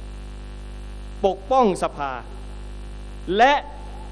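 Steady low electrical mains hum from the audio system, running under a man's amplified speech, which comes in two short bursts.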